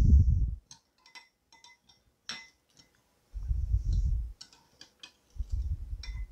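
A metal utensil stirring yeast, sugar and warm water in a glass bowl, ticking and clinking lightly against the glass at an irregular pace. Three dull low thumps come at the start, in the middle and near the end.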